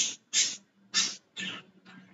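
A man's short breathy exhalations through the mouth, like a silent chuckle. They come about twice a second and fade away, with no voiced pitch.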